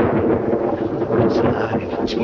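Thunder rumbling steadily through a storm, on an old, noisy film soundtrack.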